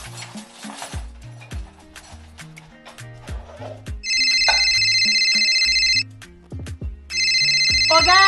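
Background music with a steady beat, then a phone ringing loudly twice, an electronic ring of about two seconds each with a one-second gap. The second ring starts about seven seconds in.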